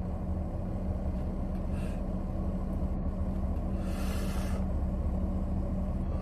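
Steady low rumble and hum of a car idling, heard from inside the cabin. A brief breathy hiss comes about four seconds in.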